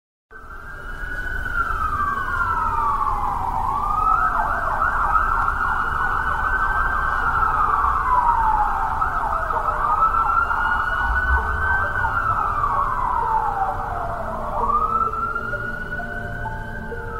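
A siren wailing, its pitch sweeping slowly up and down, a few seconds per sweep, over a low rumble. Faint held notes come in during the second half.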